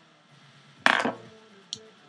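A sharp knock a little under a second in, followed by a faint click near the end, as a small cosmetic bottle of Benefit Benetint cheek tint is handled and opened.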